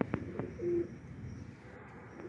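Domestic pigeons cooing: a few short, low coos, with two light knocks near the start.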